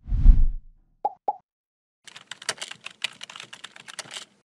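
Animation sound effects: a low whoosh in the first half-second, two quick pops about a second in, then a rapid run of keyboard-typing clicks from about two seconds on as a web address types itself into a search bar.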